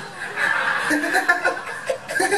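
People laughing in a burst that builds about half a second in and fades near the end.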